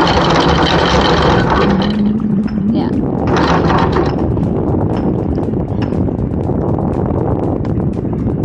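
Anchor windlass on a Jeanneau 50 DS working the chain to dip the mud-clogged anchor back into the sea and wash it clean. The noise stops about two seconds in and comes back briefly a second later, over the steady low sound of the boat's engine running.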